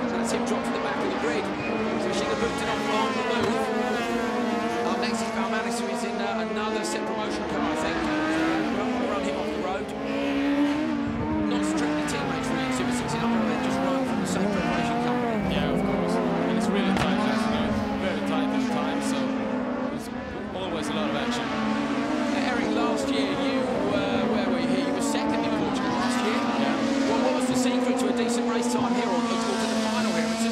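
Super 1600 rallycross cars racing hard, their 1.6-litre engines revving up and down through the corners, with many short sharp clicks over the engine sound.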